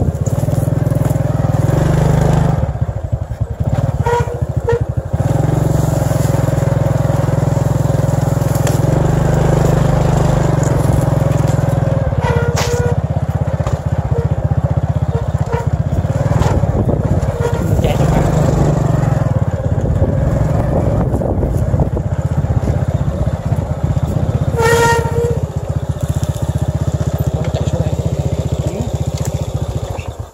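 Steady loud rumbling and crackling of wind buffeting the microphone outdoors, with three brief high-pitched chirps about 4, 12 and 25 seconds in.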